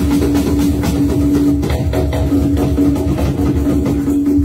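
Live band music with drums and percussion driving a steady rhythm over a held note.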